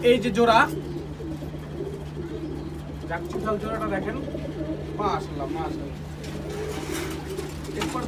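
Domestic pigeons cooing continuously in a loft cage, a low wavering murmur of several birds at once. A steady low electrical hum runs underneath.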